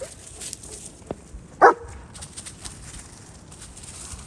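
A dog gives one short, loud bark about one and a half seconds in, over the rustle of paws in dry leaf litter.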